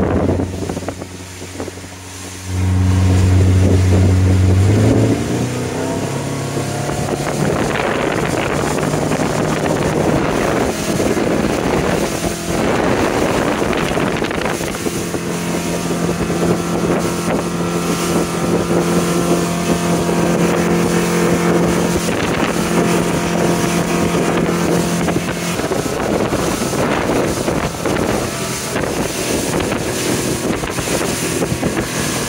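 Motorboat engine running under way: it gets louder a couple of seconds in, its pitch climbs as the boat speeds up, then it holds a steady drone, with wind buffeting the microphone.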